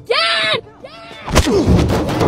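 A high-pitched shout rising and falling in pitch, then about a second and a half in a sudden loud bang with a deep booming tail.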